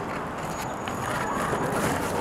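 Outdoor street ambience: a steady noisy background with faint, indistinct voices in it.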